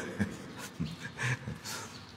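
A man's quiet, breathy chuckling: several short laughing breaths between spoken phrases.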